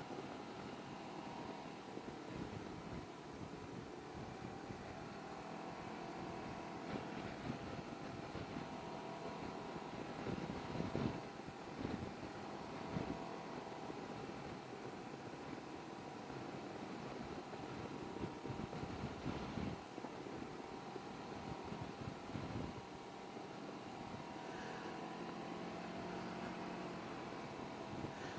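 Can-Am Ryker three-wheeled motorcycle cruising, its engine running steadily with even road and wind noise, swelling briefly a few times, notably around eleven and twenty seconds in.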